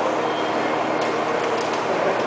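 Steady, loud machinery noise with a low hum underneath, running evenly with no distinct events.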